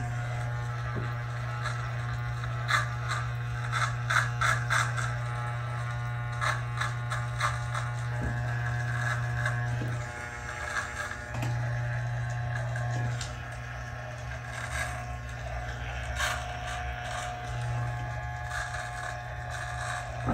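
Andis T-Outliner corded trimmer running with a steady low buzz, its blades crackling as they cut through goatee hair. The buzz drops in level for a while around the middle.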